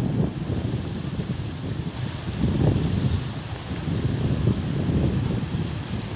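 Wind buffeting the phone's microphone outdoors: an uneven, gusting low rumble.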